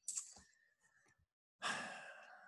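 A man's audible breathing during a pause: a short breathy sound at the start, then a longer breath about one and a half seconds in that fades away.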